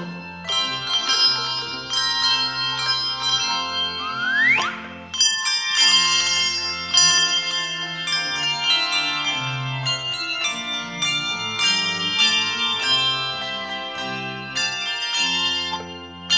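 Handbell choir ringing a gospel hymn medley: chords of struck handbells ringing on, with low bass-bell notes underneath. A brief rising sweep cuts through the ringing about four seconds in.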